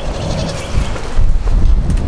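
Strong wind buffeting the microphone: a gusty low rumble that grows louder about halfway through.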